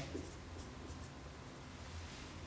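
Marker writing on a whiteboard: a few faint, short strokes.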